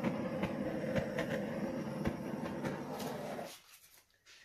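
Handheld butane torch flame hissing steadily as it is passed over wet acrylic paint to raise cells, then shut off about three and a half seconds in.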